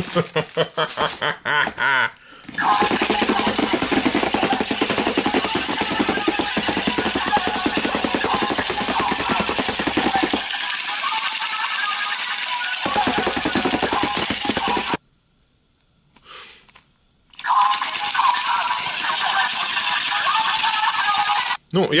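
Battery-powered spiked plastic 'jumping ball' toy switched on: its motor rattles and buzzes the hard plastic shell loudly and continuously for about twelve seconds. It cuts out suddenly, then starts up again about two seconds later and runs until near the end.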